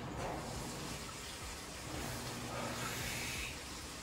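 A smoker's long drag on a cigarette and slow exhale of smoke, a breathy rush of air that is strongest in the second half, over the steady low hum of coin-laundry machines running.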